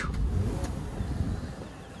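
Dodge Caravan minivan rolling over a rough dirt track, heard from inside the cabin as a steady low rumble, with one sharp knock right at the start.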